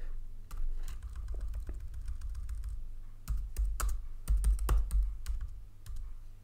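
Typing on a computer keyboard: a run of key clicks while a word is deleted and a new one typed, sparse at first and coming faster and louder from about halfway.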